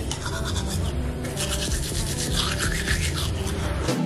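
Teeth being brushed with a manual toothbrush: rapid back-and-forth scrubbing strokes, strongest from about a second in.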